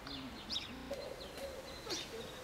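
Small birds chirping outdoors: short, high chirps repeated every fraction of a second, with a low steady tone underneath at times.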